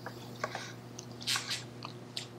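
Faint, scattered small clicks and a soft breath picked up close to a lapel microphone as a man taps through a tablet, over a steady low electrical hum.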